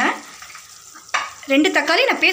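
Soft sizzling of chicken pieces cooking in an open pressure cooker on the stove, with a short knock about a second in. A woman's voice talks over it at the start and again near the end.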